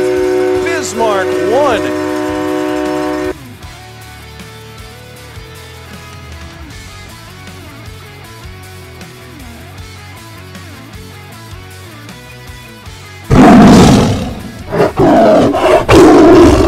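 Music with a loud held chord for about three seconds, then a much quieter stretch. About thirteen seconds in, a loud animal-roar sound effect starts suddenly and swells and fades several times, as the sting of a bear logo.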